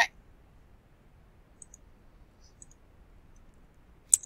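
Computer mouse clicks during on-screen work: a few faint short ticks about halfway through, over quiet room tone.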